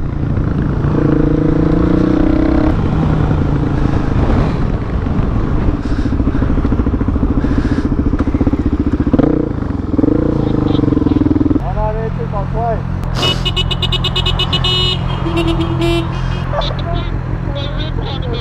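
The single-cylinder engine of a 2016 Suzuki DRZ400SM is revved and accelerated through the gears, rising and falling in pitch, then settles to a steadier low running. Near the end a horn honks in buzzing bursts for about two seconds.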